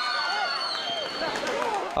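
Spectators and players at an amateur football match shouting and cheering, many voices overlapping, as the goal that opened the scoring is celebrated.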